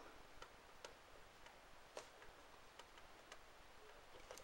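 Faint ballpoint pen writing on a sheet of paper: a scattering of soft ticks, about one every half second, as the pen touches down between letters, over near silence.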